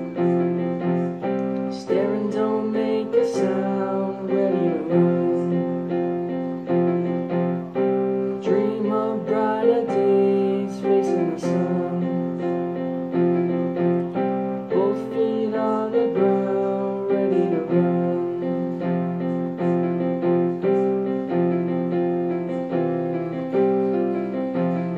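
Piano sound from a digital keyboard playing held chords with a melody moving over them. It is an instrumental stretch of a pop song between sung lines.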